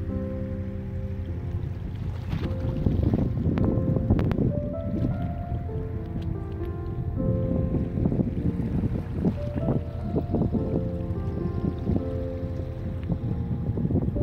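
Soft instrumental music playing over a loud, uneven rumble of wind buffeting the phone microphone at the water's edge.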